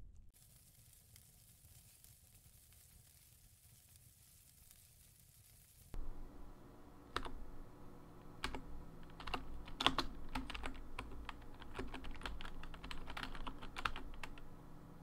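Fingers typing on a laptop keyboard: irregular keystroke clicks, several a second, starting about six seconds in after a stretch of faint hiss.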